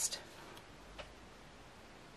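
Quiet room tone with a single light click about a second in.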